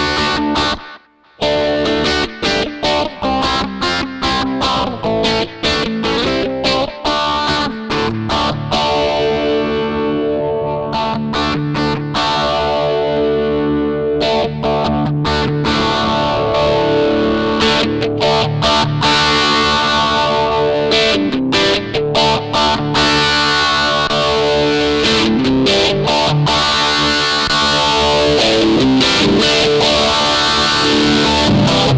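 Electric guitar played through a Heather Brown Electronicals Sensation Fuzzdrive, a fuzz-and-overdrive pedal, giving a distorted tone. The playing stops briefly about a second in and then runs on without a break.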